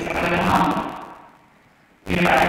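A man's voice over a hall's public-address system, a drawn-out syllable that fades out over the first second, followed by a pause of near silence.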